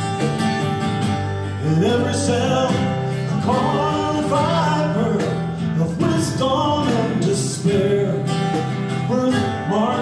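A song with acoustic guitar and a singing voice; the voice comes in about two seconds in and sings through the rest.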